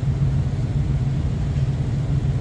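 Steady low hum with a rumble beneath it, like a motor running continuously.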